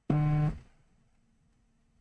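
A short buzzing tone, steady in pitch, lasting about half a second right at the start, then quiet room noise.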